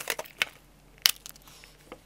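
Plastic Blu-ray case being handled and snapped open: a couple of sharp plastic clicks, the loudest about a second in.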